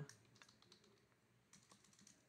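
Faint, scattered keystrokes on a computer keyboard as code is typed, with a short run of clicks about one and a half seconds in.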